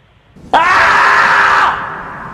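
A sudden, loud, shrill voice-like cry, like a scream, starts about half a second in. It is held for about a second and then fades away.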